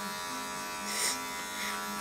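Electric hair clippers running with a steady buzzing hum as they cut the hair at the side of the head, with a short hiss about a second in.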